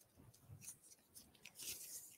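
Faint crinkling and rustling of a small folded paper slip being opened by hand, in small bursts that grow loudest near the end.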